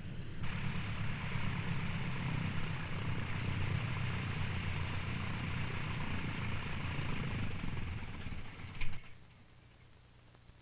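Light single-engine propeller aeroplane's piston engine running at low power after touchdown, a steady rumble with a hissing edge. It cuts off about nine seconds in with a brief click, leaving near silence.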